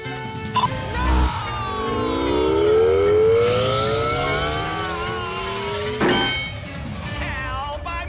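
Cartoon action sound effects over dramatic background music: a button click and a low thump, then a long rising whine, ending in a loud clank about six seconds in.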